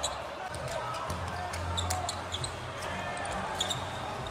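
Live basketball game sound from the court: a ball bouncing on the hardwood in scattered knocks, faint voices and a steady low hum underneath.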